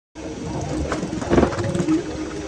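Close-up rustling and scuffling of a hedgehog moving right by the microphone, loudest about a second and a half in.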